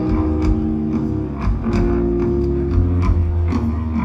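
Live rock band playing: electric guitars and bass guitar holding sustained notes over drums, with steady regular drum and cymbal hits.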